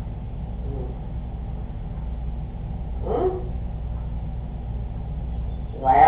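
Steady low hum of the recording, with one short vocal sound falling in pitch about three seconds in.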